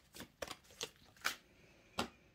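A deck of tarot cards being shuffled by hand: a handful of soft, separate snaps and flicks of the cards against each other.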